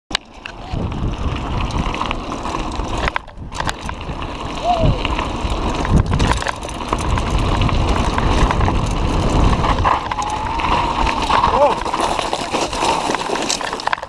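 Mountain bike descending a gravel track at speed: wind buffeting the bike-mounted camera's microphone over the rumble and crunch of tyres on loose gravel, with a brief break about three seconds in.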